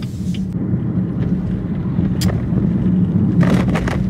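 Car cabin noise while driving: a steady low hum of engine and tyres heard from inside the car, with a few faint clicks and a short cluster of clicks near the end.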